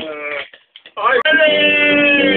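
A drawn-out vocal 'um' with a laugh, then, about a second in, a guitar starts sounding a held chord that rings on.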